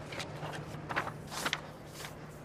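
Paper posters rustling as they are handled and pressed flat against a wall by hand: three short rustles, the loudest about one and one and a half seconds in, over a low steady hum.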